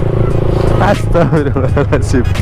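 Motorcycle engine running steadily as the bike is ridden along, with a person's voice over it from about the middle on.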